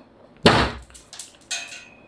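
Honor X9a's curved glass screen slammed down onto a walnut on a wooden table. There is one hard crack about half a second in, followed by a few lighter clicks and knocks. The walnut shell gives way while the screen glass holds.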